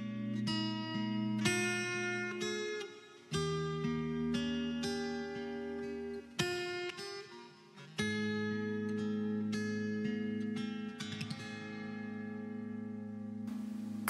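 Acoustic guitar picking the soft instrumental introduction of a ballad, phrase by phrase, over a low bass line, with brief drops in level between phrases.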